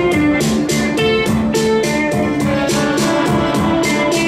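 Live band music: electric guitar picking a melodic line over a steady beat that ticks about four times a second.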